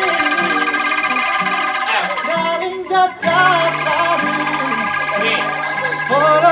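Voices singing a song to acoustic guitar accompaniment, with steady held chords under the melody and a short break about three seconds in.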